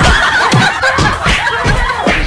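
Laughter in quick, choppy bursts.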